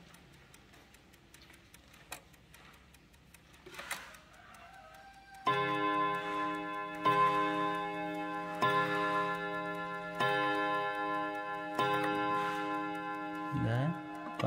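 Four-rod gong movement of a Napoleon-hat mantel chime clock: quiet ticking for about five seconds, then the hammers strike the rod gongs six times, about a second and a half apart. Each note rings on into the next.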